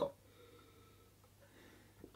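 Near silence while a man sips beer from a glass: only faint breathing and swallowing noises.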